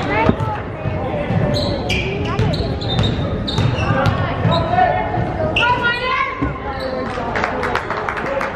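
Basketball dribbled repeatedly on a hardwood gym floor, with players' and spectators' voices echoing in the large gym.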